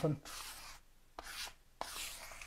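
Small hand-held spreader scraping smoothing paste across a concrete worktop, working it into the pinholes. It comes as about three short strokes, each starting with a light tick.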